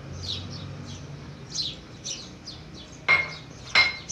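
A wooden spoon stirring a custard mixture in a metal pan, knocking sharply against the pan twice near the end, each knock with a short metallic ring. Birds chirp through it all, with quick falling chirps several times a second.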